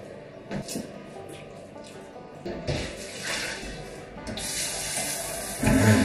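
Water poured from a stainless steel stockpot into a kitchen sink: the scouring water from washing wool yarn. It starts as a light splash about halfway in, becomes a heavier, steady pour near the end, and ends with a thump.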